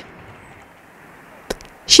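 A pause in the voice-over: a faint steady hiss with a single sharp click about one and a half seconds in.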